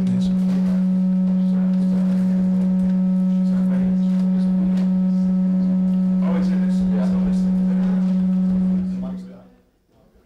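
A loud, steady low hum-like tone with fainter higher overtones, holding one pitch and then fading out smoothly about nine seconds in.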